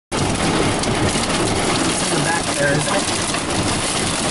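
Steady rush of heavy wind-driven rain around a vehicle during a severe thunderstorm.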